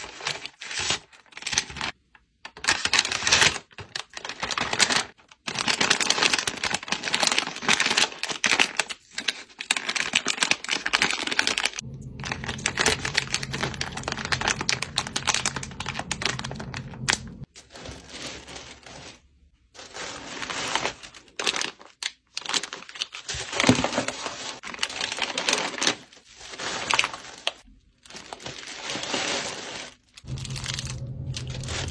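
Packaging handled up close: paper and plastic bags and tissue paper rustling and crinkling, with dense crackles and light taps. It comes in short takes that stop and start abruptly, with a low hum underneath for a few seconds mid-way.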